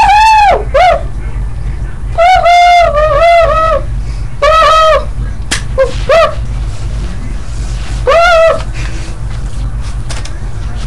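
A run of about nine loud, high-pitched squeaks, each rising and falling in pitch, some long and some short, in irregular clusters, with a single sharp click about halfway through, over a steady low hum.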